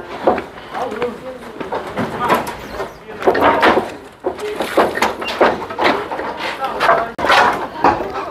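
People talking in the background, with no clear words.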